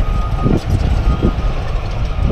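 A construction machine's reversing alarm beeping repeatedly, one thin high tone, over a heavy low rumble.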